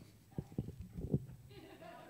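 A few soft, low thumps in quick succession, footsteps of a man walking down a carpeted church aisle, followed by a faint, distant voice near the end.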